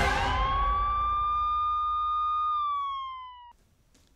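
A single siren wail: it rises in pitch, holds steady, then sags and cuts off suddenly about three and a half seconds in. Under its first second a noisy rush fades away.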